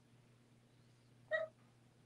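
Quiet room tone broken once, about a second in, by a single brief high-pitched call.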